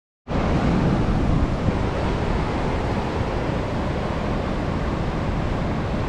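The Merced River rushing steadily through rapids above Nevada Fall, a continuous loud roar of whitewater, with wind on the microphone.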